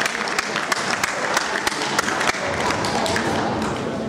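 Scattered hand clapping from spectators, irregular sharp claps over a murmur of background noise.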